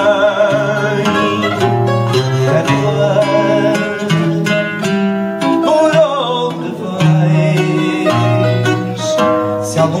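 Fado accompaniment: Portuguese guitar and viola (classical guitar) play a plucked instrumental passage between sung lines. A singer's wavering held note is heard at the start, and the voice comes back near the end.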